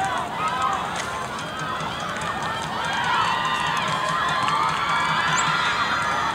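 Many spectators' voices shouting and cheering at a soccer match, swelling louder about halfway through as play reaches the goalmouth.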